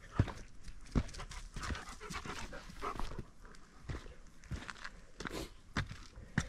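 Footsteps on a dirt and rock forest trail, about one step a second, with breathy noise between the steps.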